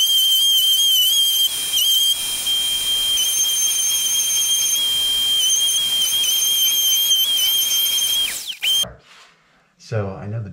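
Electric random orbital sander with a dust-extraction hose running against a wooden cabinet panel: a steady high-pitched whine whose pitch dips slightly now and then. It winds down and stops near the end.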